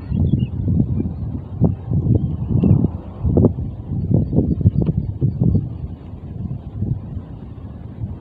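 Wind buffeting the microphone outdoors: an uneven low rumble in short gusts, easing a little near the end.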